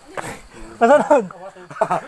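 People's voices in short laughing exclamations: two main bursts about a second apart.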